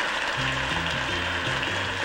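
Closing theme music of a television game show begins about half a second in, a bass line of low notes changing in steps, over steady studio audience applause.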